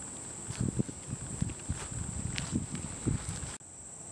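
Footsteps on grass: a series of soft, uneven thumps as someone walks up close. Crickets keep up a steady high chirring behind them, and both cut off suddenly near the end.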